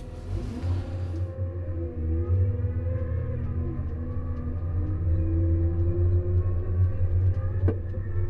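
Cat K-series small wheel loader's diesel engine running as the machine drives the course in torque converter mode; its note shifts, drifting down and then rising again in the second half. A single sharp click sounds near the end.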